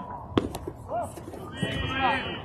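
Voices calling out across a baseball field, with one sharp crack about half a second in.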